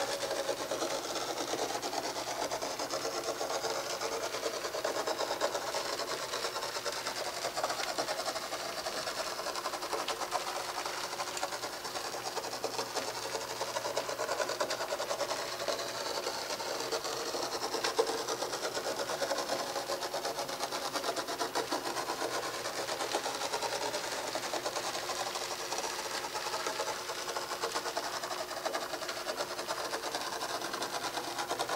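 Mechanical sand-drawing machine running steadily: its drive and gear train (a 36-tooth pinion turning a 74-tooth magnet gear inside a 150-tooth ring gear) give an even, continuous whir with a fast fine rattle, while a magnet-pulled steel ball rolls through the sand.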